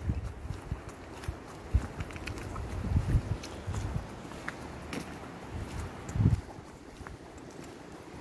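Footsteps on a gravel track while walking, with wind buffeting the microphone in uneven low gusts.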